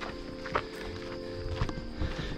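Soft background music with steady held notes, and two footsteps on the trail about a second apart.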